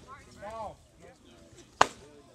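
A fastball smacking into the catcher's mitt: one sharp, loud pop near the end.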